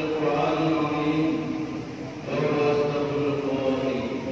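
A group of men chanting a prayer together in long held notes, led by a man on a microphone. A new phrase starts a little past halfway through.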